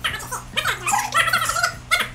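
A woman's high-pitched straining vocal noises, several short sliding sounds, as she struggles through a hard push-up.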